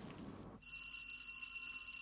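A bell ringing steadily, starting suddenly about half a second in and holding without fading.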